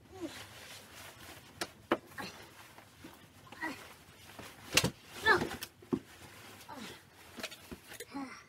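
A person moving about roughly while pulling on a hooded jacket, with short wordless vocal sounds and scattered sharp knocks and thumps, the loudest a little before the five-second mark.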